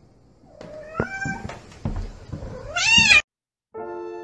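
Domestic cat meowing several times, with a few sharp knocks in between. It ends in one loud, drawn-out meow that rises and then falls in pitch, cut off abruptly.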